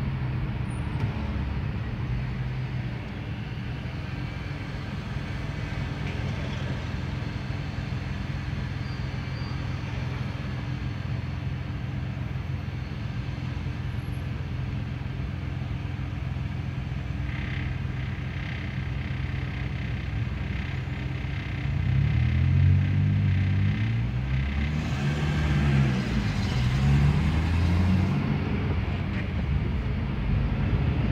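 A Fiat Siena's engine heard from inside the cabin in slow traffic: a steady low hum at first, then in the last several seconds it revs up and drops back a couple of times as the car gets moving.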